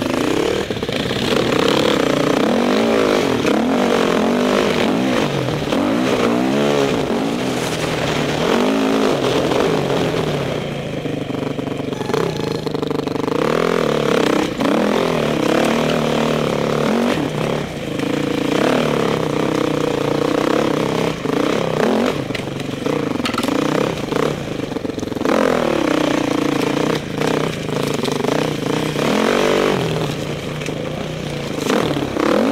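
Four-stroke dirt bike engine ridden hard along a dirt trail, revving up and dropping off again and again as the throttle is worked and gears change.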